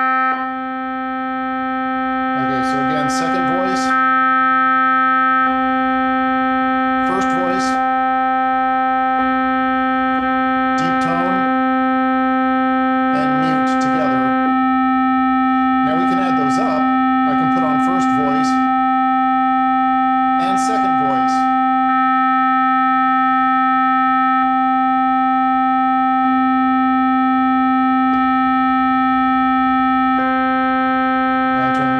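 Hammond Solovox, a 1940s vacuum-tube monophonic keyboard instrument, holding one steady note near middle C (about 260 Hz) while its tone controls are switched, the timbre changing between brighter and duller several times. Several short bursts of noise come over the sustained note.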